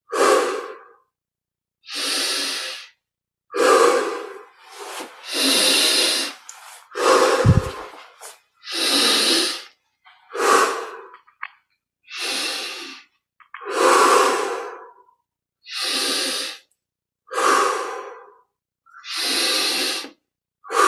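A man breathing deeply and audibly through the mouth in a steady rhythm, about one breath every second and a half, as a yogic breathing exercise. A brief low thump comes about halfway through.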